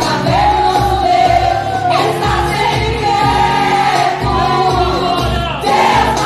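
Women's choir singing a Portuguese gospel song in unison, accompanied by a band with a steady drum beat.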